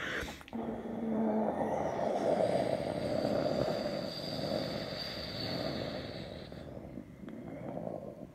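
Jet engines of a departing twin-engine airliner climbing away overhead: a steady rumble with a high whine over it from about two seconds in until near the end, the whole sound slowly fading as the aircraft recedes.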